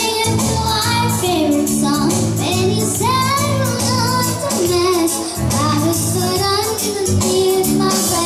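A young girl singing a melody into a microphone, amplified through PA loudspeakers, over a Yamaha electronic keyboard accompaniment of held chords and bass with a steady beat.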